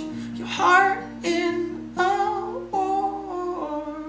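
Steel-string acoustic guitar strummed, with a man singing over it in several drawn-out phrases. Voice and guitar quieten near the end.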